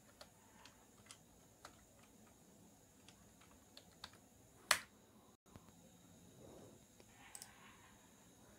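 Faint computer keyboard keystrokes entering a password, about two a second, followed a little under five seconds in by one louder click.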